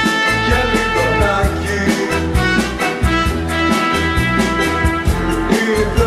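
Live band music in an upbeat sixties style: drums keep a steady beat under bass guitar, electric guitar and held keyboard chords.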